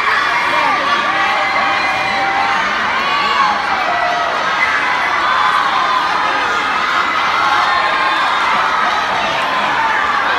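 A crowd of spectators cheering and shouting swimmers on during a race, many voices overlapping at a steady loud level.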